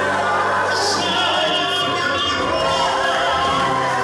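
Church worship music: voices singing with held notes over an accompaniment, led by a singer on a microphone.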